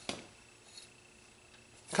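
A single short, light click of a metal spokeshave being handled, then near silence.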